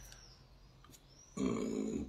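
Near silence at first, then about one and a half seconds in a man makes a short, low voiced sound with his mouth closed, a hesitation hum or grunt, just before he speaks again.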